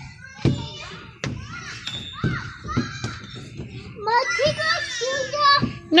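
Children's voices at play, clearest from about four seconds in, with a few sharp knocks in the first three seconds.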